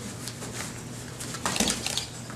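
Bare feet thudding and scuffing on a gym mat as a fighter switches stance and brings his knee up for a kick, with one dull thump about one and a half seconds in, over a steady low hum.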